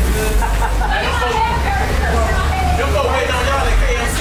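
Indistinct voices over a steady deep low hum.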